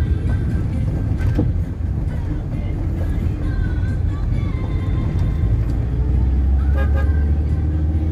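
Steady low engine and road rumble inside a moving car's cabin, growing heavier about six seconds in, with music faintly in the background.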